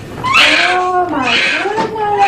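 Newborn baby crying: two wails in quick succession, each rising then falling in pitch.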